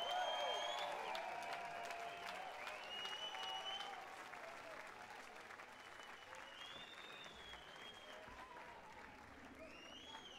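Audience applauding with several whistles just after a song ends, the clapping dying away over the seconds.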